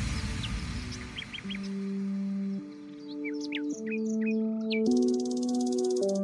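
Background music of held, slow-changing chords, with bird chirps over the first half and a fading wash at the start.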